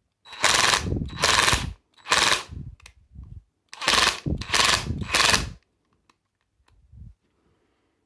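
Parkside 20 V cordless impact wrench run in six short trigger bursts, in two groups of three, each with a rapid hammering from the impact mechanism. The freshly reassembled tool is working.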